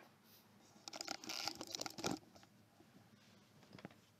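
A burst of rustling and scraping, lasting about a second, as someone moves about close to the microphone, getting up to leave the desk. A few faint clicks follow near the end.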